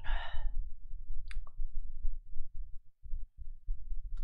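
A man sighing into a close microphone right at the start, a short breathy exhale, followed by a couple of brief faint clicks, over a low rumble.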